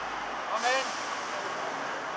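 A city bus pulling away amid street traffic noise. The low engine hum drops and a hiss rises about half a second in. A distant voice is heard briefly at the same moment.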